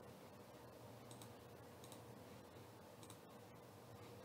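Near silence: faint room tone with a few soft computer mouse clicks.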